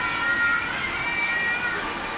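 A child's high-pitched, wavering call that is held for about a second and a half, over the steady hubbub of children on a busy ice rink.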